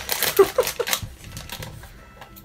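Crinkly foil snack packet crackling as it is cut open with scissors, a dense burst of crackles in the first second, then sparser clicks.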